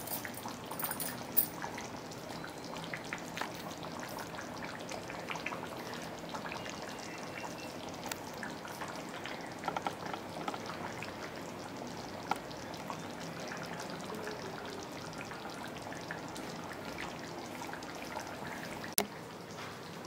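Chicken curry simmering in an uncovered clay pot: a steady low sizzle full of small bubbling pops, with a couple of sharper clicks, one near the start and one near the end.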